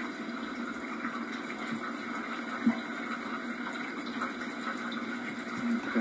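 Steady hiss and hum of an old home-video tape's room tone, with one faint tap near the middle.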